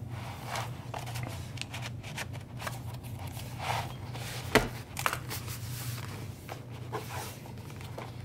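Hands handling a stitched leather journal cover: soft rustling and sliding of leather and cards in its pockets, with one sharp tap about halfway through, over a steady low hum.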